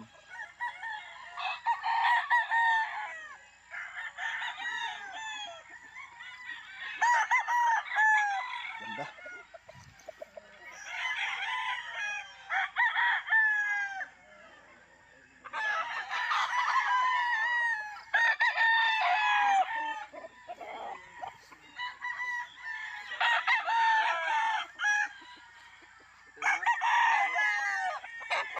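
Several gamecocks crowing, one after another and sometimes over each other, a crow every few seconds with short lulls between.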